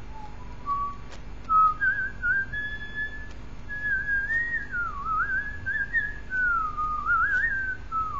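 A person whistling a song melody: a single clear tone that rises and falls in phrases, with quick wavering trills and slides between notes. It grows louder after about a second and a half.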